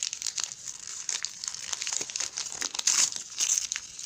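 Wrapping paper and tissue paper crinkling and tearing as a small gift is unwrapped by hand: a dense run of quick paper crackles, busiest about three seconds in.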